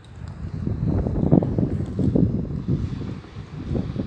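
Wind buffeting the microphone: an uneven low rumble that swells and dips in gusts.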